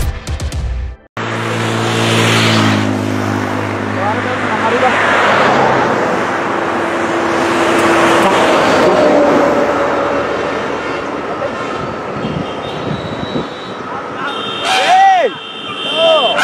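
A brief snatch of music, then roadside traffic: a large vehicle passes close by with its engine note falling, followed by steady road noise from passing cars and trucks. Near the end come a few loud, short shouts.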